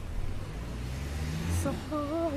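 Car engine heard from inside the cabin while driving, a low rumble whose pitch rises as the car accelerates.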